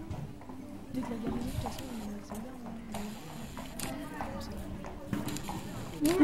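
Horse cantering on a sand arena, its hoofbeats landing as dull, irregular thuds, with a faint voice in the background.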